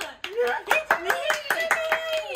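Several young women clapping in quick, uneven applause, mixed with excited high-pitched voices and exclamations.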